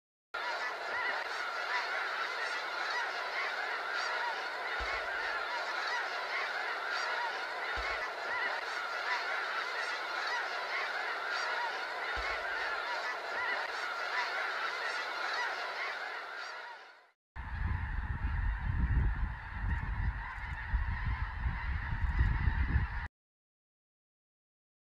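A large flock of geese honking, a dense chorus of many overlapping calls. About 17 seconds in, the sound cuts to another stretch of the flock calling over a heavy low rumble, and it stops abruptly shortly before the end.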